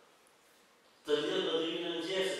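A short pause of near silence, then about a second in a man's voice begins chanting in a held, melodic line: a dhikr-style recitation.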